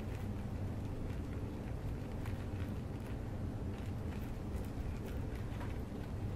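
Plastic zip-top bag crinkling and ticking faintly in the hands as slime is kneaded inside it, over a steady low hum.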